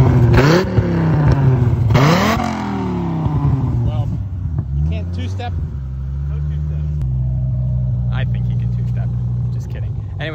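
1996 Dodge Viper RT/10's V10 engine revved twice in quick throttle blips, then settling back to a steady, low idle.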